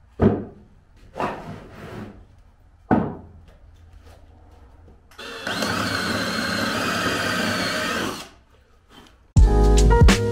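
Wooden blocks knocked down onto a wooden workbench a few times, then a handheld power tool runs steadily for about three seconds with a wavering whine. Music with a beat starts near the end.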